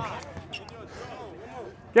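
Low overlapping chatter of spectators, with a basketball bouncing on the hard court. A man's loud call starts right at the end.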